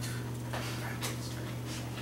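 Quiet classroom room tone: a steady low hum with a few faint, brief scratchy sounds about every half second.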